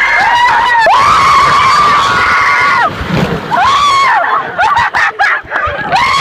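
Several riders screaming on a raft water slide, in long high held screams that rise and fall. Water splashes and rushes around the raft, with sharp splashes in the last second or two as it runs out into the pool.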